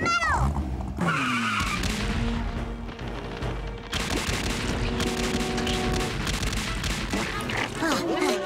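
Cartoon sound effects: a small tank's engine starting with a falling glide and a squeal as it sets off, then from about four seconds in a rapid rattle of gunfire chasing the fleeing character, with background music.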